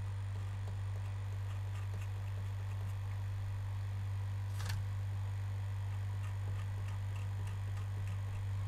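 Blade scraping solder mask off the copper traces of a circuit board: faint, irregular small ticks, with one sharper click about halfway through, over a steady low electrical hum.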